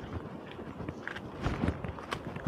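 Footsteps on dry dirt ground: a few soft steps at walking pace, the clearest about one and a half seconds in.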